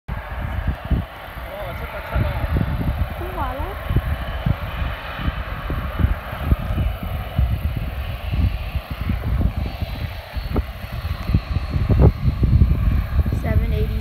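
Wind buffeting the microphone in irregular gusts, over the steady distant hum of an airliner's jet engines as it moves along the runway. Brief snatches of voices come in twice, once early and once near the end.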